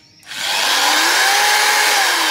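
A 10 mm electric hand drill run free with no load. Its motor whine starts about a third of a second in, speeds up, and holds a steady pitch, easing off slightly near the end.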